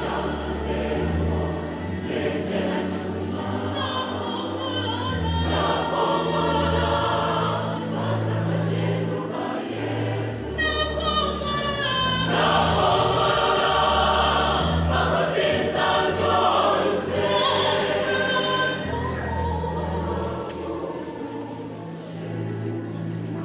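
A large church choir singing a gospel song in parts, over a low bass line that moves note by note, swelling louder through the middle of the passage.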